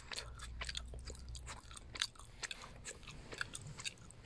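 Gum being chewed with the mouth open: an irregular run of small, wet clicks and smacks.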